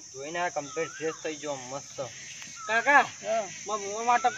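Insects chirring steadily at a high pitch, under men talking.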